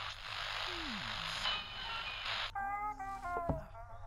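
Small portable radio hissing with static, then a thin, narrow-sounding tune coming through it about two and a half seconds in.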